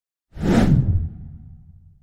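Whoosh sound effect with a deep rumble for an intro logo reveal. It starts suddenly about a third of a second in, then fades away over the next second and a half.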